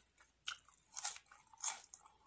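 Mouth chewing crisp raw vegetables, lettuce and cucumber, in a series of crunches, three louder ones about half a second apart.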